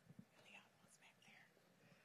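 Near silence: faint whispering and a soft thump just after the start.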